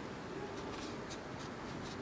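Handling noise from a handheld camera: a few faint, brief scratching rubs over a steady low background hiss.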